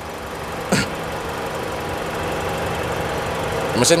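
Mitsubishi Outlander Sport's four-cylinder petrol engine idling steadily, heard from close by under the open bonnet, with the air conditioning running. A short sharp sound comes a little under a second in.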